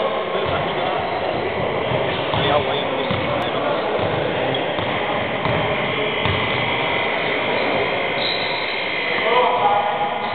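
Basketball game sounds in a gym: a steady hubbub of indistinct voices, with a basketball bouncing on the wooden court.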